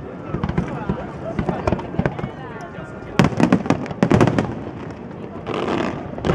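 Aerial fireworks going off in a rapid, irregular string of bangs and crackles. The bangs come thickest and loudest from about three to four and a half seconds in.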